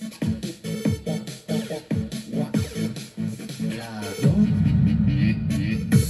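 Electronic music with a steady beat, played through a Panasonic DT505 boombox's speakers. A heavy bass line comes in about four seconds in.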